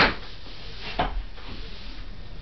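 Sharp knocks: a loud one at the very start and a softer one about a second later.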